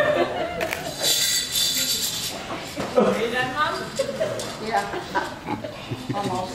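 A laugh, then low talk and murmurs from people in a large room, with a brief jingling rattle about a second in that lasts about a second.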